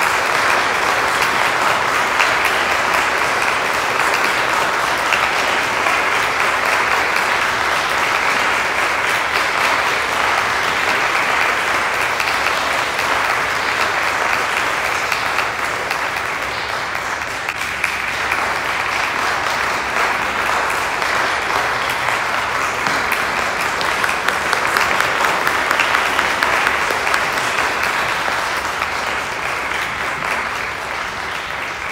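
Audience applauding, a dense continuous clapping that dips a little just past halfway and then builds again.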